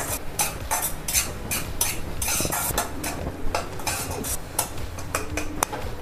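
Steel spatula scraping and clinking against a kadhai while stirring thick masala gravy, in irregular strokes a few times a second.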